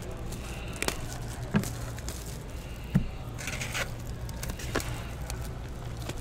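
Shrink wrap being torn and peeled off a cardboard Panini Select baseball card box: a few sharp clicks and taps of plastic and cardboard, with a short burst of crinkling a little after halfway. A steady low hum runs underneath.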